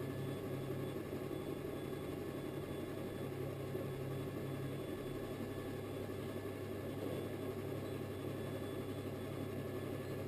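Electric potter's wheel motor running with a steady low hum while a clay pot is thrown on it.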